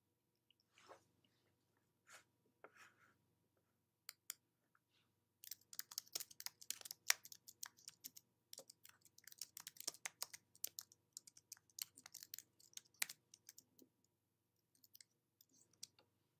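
Faint, irregular run of small clicks and crackles close to the microphone, a few at first, then dense from about five seconds in until about thirteen seconds, over a low steady hum of room tone.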